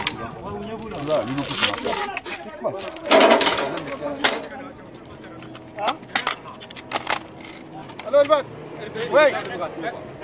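Men's voices calling out and talking in the field, broken by several sharp cracks, the loudest a little after three seconds in.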